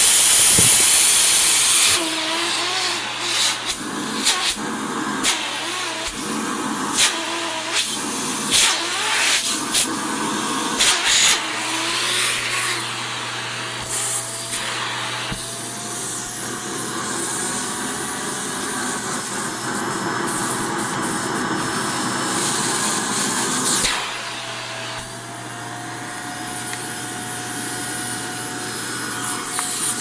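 Shark handheld vacuum running with a hose and nozzle attachment, its steady suction noise changing as the nozzle is worked over fabric. There are scattered knocks and clicks through the first dozen seconds, and the suction sound drops in level about two-thirds of the way through.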